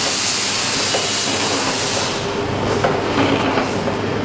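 Vertical liquid-packaging machine running: a long hiss for about the first two seconds, then its mechanism clicking and knocking.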